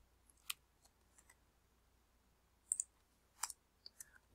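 A few faint, scattered computer keyboard keystrokes: one about half a second in, then two pairs of clicks in the second half and one more just before the end.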